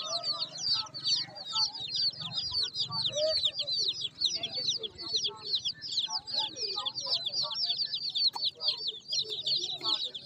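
A crowd of young chicks peeping nonstop: many short, high, downward-sliding peeps overlapping without a break.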